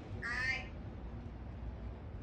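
One short, high-pitched vocal sound from a child near the start, lasting about half a second, over a steady low hum.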